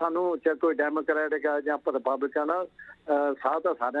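A man talking over a telephone line, his voice thin and cut off in the highs as a phone call sounds, with a brief pause between phrases.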